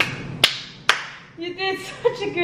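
Three sharp hand claps about half a second apart, then a short burst of a woman's voice near the end.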